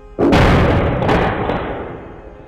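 Loud blast sound effect: a sudden bang about a quarter second in and a second crack about a second in, trailing off over the next second.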